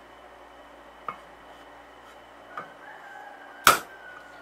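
A small hammer striking metal on a workbench: a faint light tap about a second in, another faint one later, then one sharp loud blow near the end, peening a bronze pin to fix a wooden knife handle.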